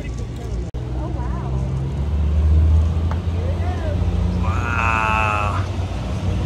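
A Jeep engine pulling the tour tram, a steady low drone that swells about two seconds in, with snatches of voices and a brief wavering, pitched sound near the end.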